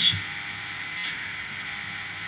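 Room tone in a pause between words: a steady low hiss with a faint electrical hum under it.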